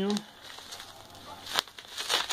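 Plastic bubble wrap around a package crackling faintly as it is handled, with one sharper crackle about one and a half seconds in.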